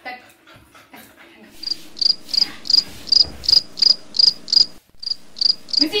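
Cricket chirping steadily, short high-pitched chirps at about three a second, starting a little under two seconds in.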